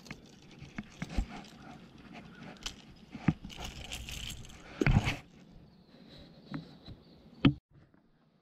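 Handling noise: clothing rubbing over the camera's microphone, with scattered clicks and knocks and two louder thumps, one about five seconds in and a sharp one near the end.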